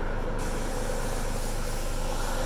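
Police helicopter hovering overhead: steady rotor and engine noise, with more hiss from about half a second in.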